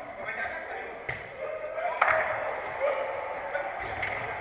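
Football being kicked during five-a-side play on artificial turf: a sharp thud about a second in and a louder one at two seconds, among players' shouts.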